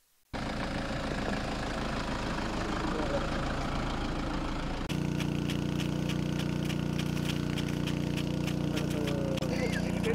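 Outdoor field sound with a steady low engine hum and quick, irregular ticking from about five seconds in, as an impact sprinkler on a tripod sprays the field; before that a rougher steady noise starts suddenly.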